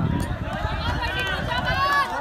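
Footsteps of a pack of middle-distance runners on a dirt track as they pass close by, with spectators shouting encouragement over them.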